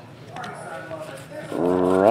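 Faint rustle of trading cards being slid one behind another in the hands, then a man's drawn-out voice starts near the end.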